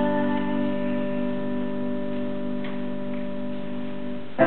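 Piano sound from a Korg digital stage keyboard holding a sustained chord that slowly fades away, with no singing over it.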